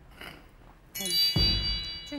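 A short chime-like sound-effect sting about a second in: a bright, high ringing shimmer with a low hit, starting suddenly and fading out.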